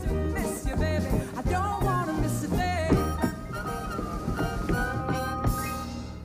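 A recorded pop ballad with a sung vocal, playing over the hall's sound system, with sharp clicks of tap shoes striking the stage mixed in; the music fades down near the end.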